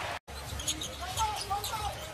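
After a brief dropout near the start, a basketball is dribbled on a hardwood arena court, with short sneaker squeaks and crowd noise behind it.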